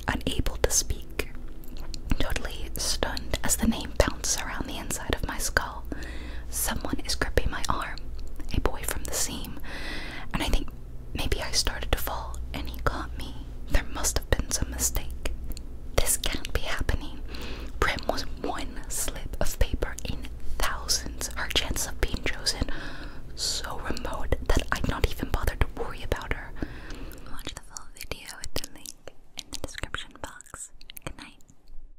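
A woman whispering as she reads aloud from a book, close to the microphone, with small crisp mouth clicks between words. The whispering fades out near the end.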